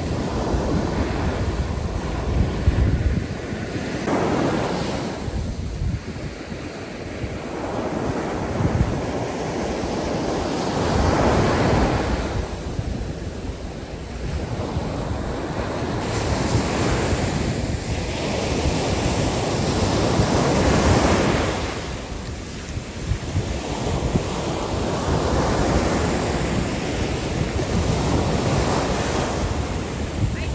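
Ocean surf breaking on a sandy beach, the wash swelling and fading every few seconds, with wind buffeting the microphone.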